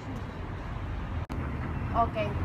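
Steady low rumble of street traffic, with a momentary dropout just past halfway.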